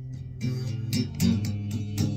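Electric guitar playing: soft ringing notes, then chords strummed harder from about half a second in.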